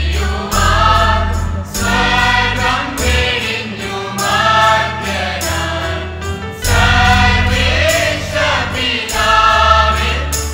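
Church choir of women and girls singing together, held sung notes changing every second or so, over sustained low bass notes from an accompanying instrument.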